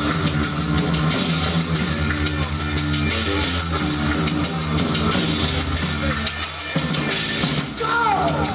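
Live band playing at full volume, electric bass guitar and drum kit with cymbals keeping a steady beat.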